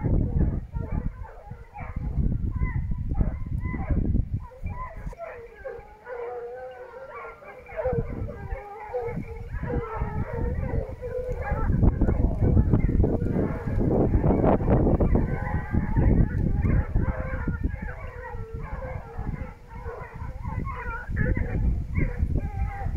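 A pack of hunting hounds baying continuously, many voices overlapping, as they run a wild boar. A low rumble runs underneath, heaviest in the second half.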